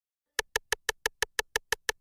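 Sharp, evenly spaced percussive clicks of a hip-hop track's intro beat, about six a second, starting just under half a second in.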